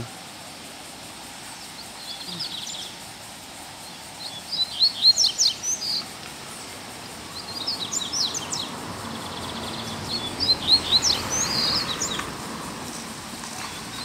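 Double-collared seedeaters (coleiros) singing against each other, a caged bird and a free one in a song dispute: four short, fast, high twittering phrases, a couple of seconds apart.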